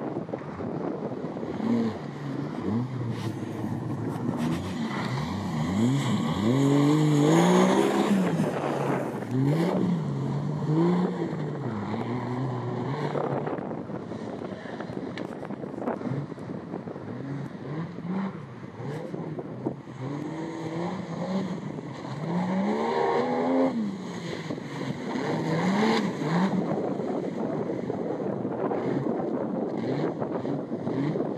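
A 4x4 off-road vehicle's engine revving up and down again and again under load, with the revs rising and falling every second or two. The loudest spell is a quarter of the way in, and a second spell of revving comes after the middle.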